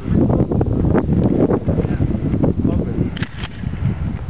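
Wind rumbling on the microphone, with indistinct voices in the background.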